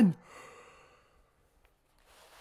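The tail of a man's loud shout, falling in pitch and cutting off right at the start, then a short breathy exhale and near silence.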